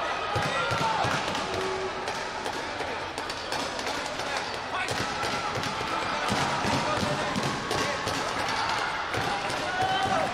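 Taekwondo sparring on a mat: scattered thuds of kicks and stamping feet, mixed with short shouts and voices.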